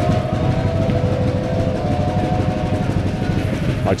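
Wind buffeting the camera microphone: a loud, dense low rumble that starts abruptly, with a few faint drawn-out tones above it.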